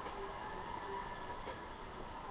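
Crowd cheering and screaming, heard through a tablet's speaker as a steady noisy roar.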